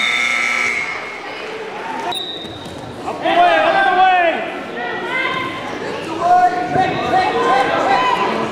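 Gym buzzer sounding a steady tone that cuts off just under a second in, then a short high whistle about two seconds in. After that come unintelligible shouts from coaches and spectators, echoing in the gym.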